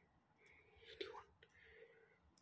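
Near silence, with faint scratching of a ballpoint pen writing on paper and a light tick about a second in.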